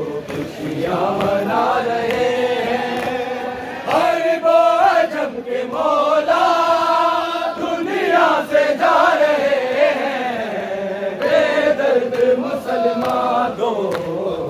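Many men chanting an Urdu noha, a Shia lament, together in long held notes that rise and fall.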